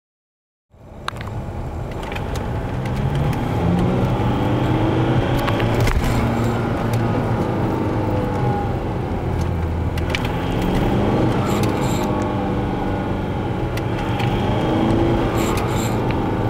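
Volkswagen 1.9 TDI turbodiesel engine running under load while driving, heard from inside the cabin with road noise. It starts suddenly about a second in, and its pitch rises and falls slowly as the engine pulls and builds boost.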